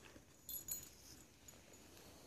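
Near silence, with a few faint light clicks about half a second in as a dog shifts into a down on a mat.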